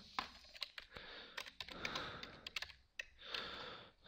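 Computer keyboard typing: a run of quiet, irregular key clicks as a short line of code is keyed in.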